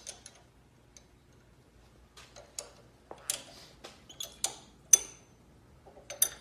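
Irregular metallic clicks, taps and rattles as a monkey handles parts on a car engine that is not running, a few with a short metallic ring. The sharpest click comes about five seconds in.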